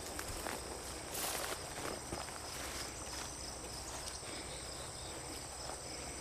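Insects chirring steadily at a high pitch in outdoor pond-side ambience, with a short rustle about a second in.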